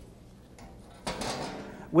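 The sheet-metal door of a manual transfer switch enclosure being swung open: one sudden metallic clatter about halfway through that dies away over most of a second.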